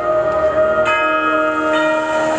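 Concert band playing sustained chords, with tubular chimes ringing; a new chord is struck about a second in.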